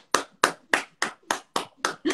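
One person clapping her hands, about seven even claps at roughly three a second.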